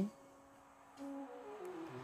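Soft background music with a few quiet held notes, very faint in the first second and a little louder from about a second in.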